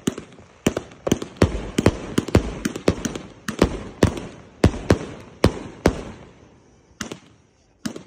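"Ghost" 200-shot consumer fireworks cake firing shot after shot: sharp bangs about every half second with crackling between them, easing off into a short lull near the end.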